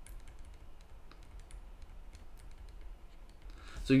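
Light, irregular clicks and taps of a stylus on a tablet screen while handwriting, over a faint low hum.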